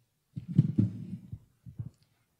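Muffled low thumps and handling noise at a lectern close to its microphone: a cluster of bumps about a third of a second in, then two short knocks near the end.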